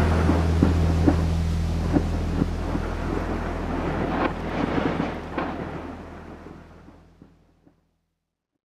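The end of a rock band's song: a low sustained chord rings out in a rumbling wash of noise with a few scattered drum hits, fading steadily to silence about seven seconds in.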